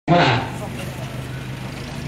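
A man says one word at the start, then a steady low background hum of outdoor noise continues without speech.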